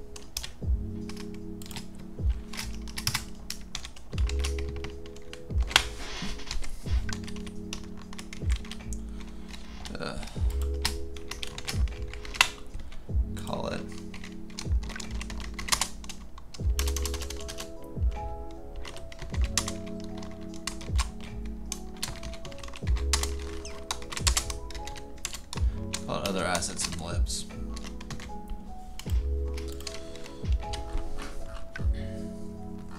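Computer keyboard typing: irregular quick key clicks throughout, over background music with a bass and chord pattern that repeats every few seconds.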